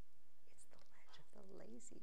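Speech only: a woman speaks a few soft words in the second half, with no other sound standing out.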